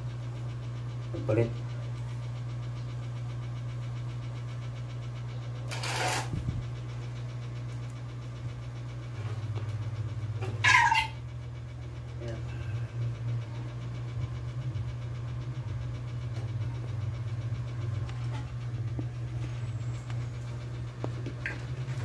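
A cat meowing a few times: a short call early on and a louder one near the middle that falls in pitch, with a short sharp noise between them. A steady low hum runs underneath.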